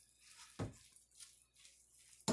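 Near silence with a few faint, soft sounds of a utensil stirring chicken salad in a mixing bowl, the clearest about half a second in.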